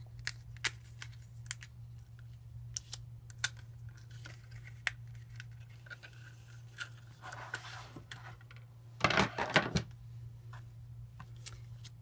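Die-cut cardstock pieces being popped out of their cut sheet and handled on a clear cutting plate: a run of small sharp paper clicks and light rustles, with a louder burst of paper rustling and clatter about nine seconds in. A low steady hum sits underneath.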